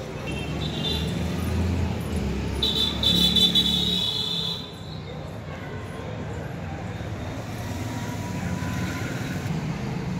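Road traffic: a motor vehicle goes by close at hand in the first half, its low rumble at its loudest about three seconds in with a high steady tone over it, then fading to a steady background of traffic noise.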